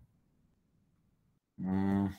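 Near silence, then about one and a half seconds in a man's voice holds a steady, level-pitched hum, a drawn-out 'mmm' of hesitation while he thinks.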